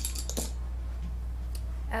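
A few light clicks and clinks in the first half second as makeup items are handled and set down, over a steady low hum.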